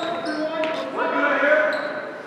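Basketball dribbled on a hardwood gym floor during game play, with players' voices calling out.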